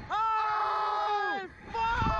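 Two men screaming on a slingshot thrill ride: one long, high, held scream that falls in pitch and breaks off about a second and a half in, then another scream starting near the end.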